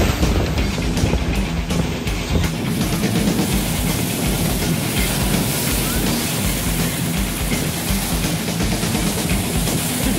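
Music with low held notes that change in steps, over a steady rushing noise.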